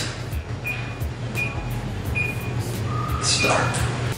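Electronic keypad beeps from a wall oven's control panel as it is set for 10 minutes: three short high beeps about three quarters of a second apart, a slightly longer lower beep, then one more high beep near the end, over a low steady hum.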